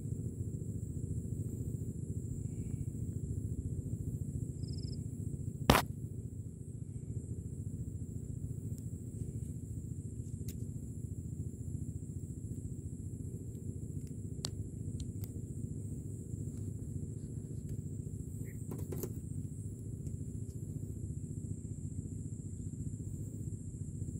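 Low, steady rumble on a camera microphone muffled by a gloved hand and sleeve, with one sharp click about six seconds in.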